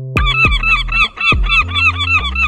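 Gulls calling in a quick, even run of yelping calls, about four a second, over a low bass line of music.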